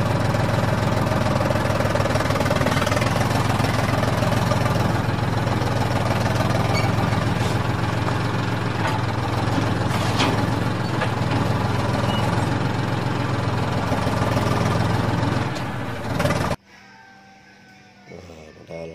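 Large farm tractor's diesel engine running in a steady, heavy drone while working a field. It cuts off suddenly near the end.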